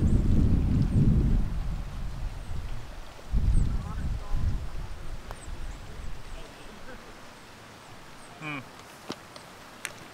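Wind buffeting the microphone in low rumbling gusts, strongest in the first couple of seconds and again about three and a half seconds in, then dying away. Faint bird chirps come and go above it, and a sharp click sounds near the end.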